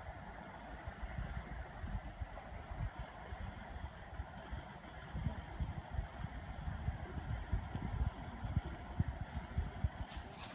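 Wind buffeting the microphone in uneven low rumbles, loudest in the second half, over a steady hiss.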